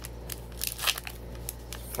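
Foil wrapper of a baseball card pack crinkling and crackling in a run of short, sharp snaps as it is pulled open and the cards are drawn out.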